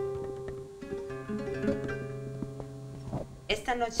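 Spanish classical guitar played solo, picked notes and chords ringing out slowly as a flamenco-tinged introduction. A woman's reciting voice comes in near the end.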